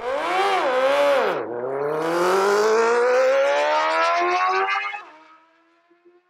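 An engine revving: two quick blips of the throttle, then a long, steadily rising rev as it pulls away, fading out about five seconds in.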